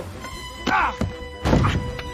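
Animated-film soundtrack: background music with a few sharp thuds and short wordless character yelps.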